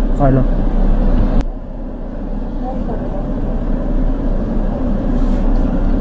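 Steady hum of a car's cabin, with its engine idling, and faint voices in the background. A sharp click comes about a second and a half in, after which the hum is a little quieter.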